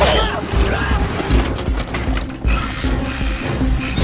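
Film sound effect of a giant robot transforming: rapid mechanical clicking, ratcheting and whirring of metal plates and gears shifting and locking into place, over a heavy low rumble. A few short whines rise out of the clatter in the second half, with film score underneath.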